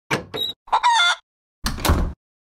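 Chicken sounds: two short clucks, then a short pitched call about three-quarters of a second in, and a louder, rougher squawk near the end.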